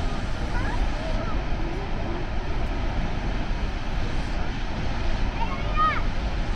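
Steady outdoor noise with a low rumble, with short high chirps scattered through it and a few more near the end.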